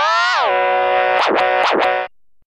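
Synthesized organ tone from the Organito 2 software plugin, held as one note. Its pitch slides up and then drops at the start, holds steady, and near the end swoops deeply down and back up twice before cutting off.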